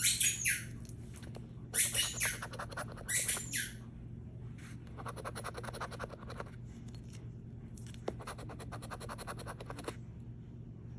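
A puppy at play making three short, high-pitched squeaky bursts in the first four seconds. Then, from about five seconds in, a coin rapidly scratching the latex off a scratch-off lottery ticket.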